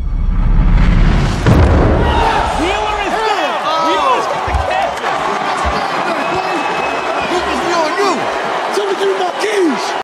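A boxing punch lands with a heavy slam about a second and a half in, over a low booming rumble. A big arena crowd then shouts and cheers, many voices rising and falling.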